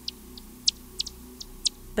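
Bat echolocation calls made audible: a quick, irregular train of short, high chirps, about three or four a second.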